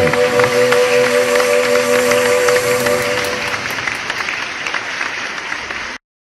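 The final held chord of the backing music fading out under audience applause at the end of a song. The clapping thins and cuts off suddenly near the end.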